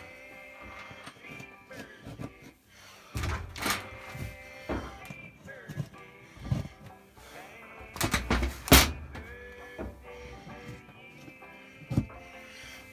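Background music with a steady tone, over which come several knocks as plastic drywall anchors are pressed and tapped by hand into drilled holes in drywall. The knocks fall about three and four seconds in, again near six and a half seconds, and loudest in a cluster around eight to nine seconds.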